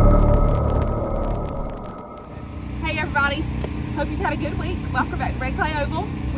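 Intro logo stinger: a deep boom fading away over about two seconds, then a woman talking over a steady low mechanical hum.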